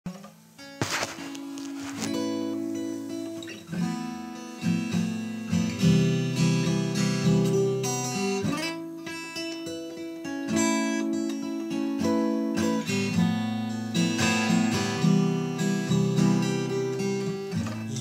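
Instrumental song intro on acoustic guitar, ringing chords that start quietly and fill out after a few seconds.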